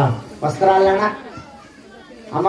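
Speech: a voice close by says a few words, with a short thump at the very start.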